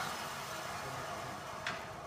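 Steady machine noise fading slowly as woodshop machinery winds down after a band saw resaw cut, with a short click near the end.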